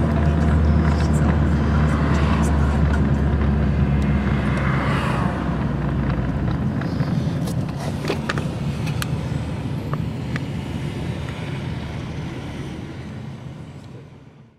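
Engine and road noise heard from inside a moving car's cabin, with a low engine drone that eases off about halfway through and a few light clicks; the sound fades out toward the end.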